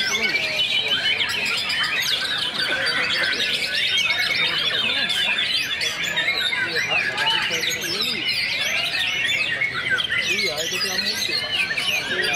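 Massed song of caged white-rumped shamas (murai batu) in competition: a dense, unbroken tangle of overlapping whistles, chirps and trills, with a fast rattling trill a few seconds in.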